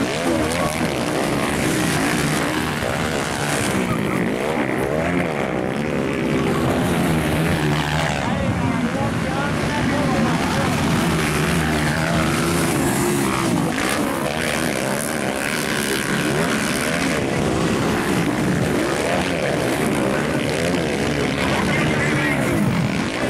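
Several motocross dirt bike engines revving as they race, the pitch rising and falling over and over as riders open and close the throttle.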